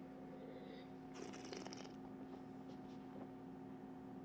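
Quiet room tone with a steady low hum, and a faint short sip of sparkling wine from a glass a little over a second in.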